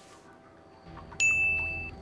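A short bell-like ding sound effect: one clear high tone held for well under a second and then cut off abruptly, about a second in, over a low hum.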